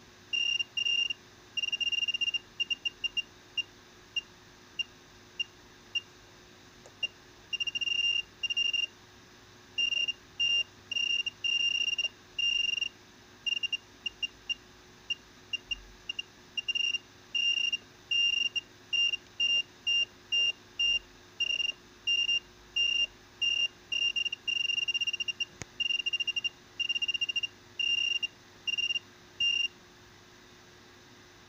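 High-pitched electronic beeping at one steady pitch, switching on and off irregularly in short blips and longer bursts of about a second, over a faint steady hum from bench electronics.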